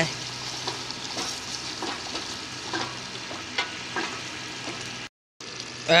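Half-cooked chicken pieces in an oily tomato masala sizzling steadily in a metal pot, with a few faint knocks of a wooden spatula stirring. The sound drops out for a moment near the end.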